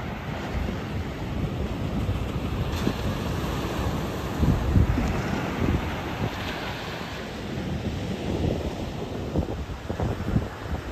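Surf breaking and washing up a sandy beach, with wind buffeting the microphone in gusts that are strongest about halfway through.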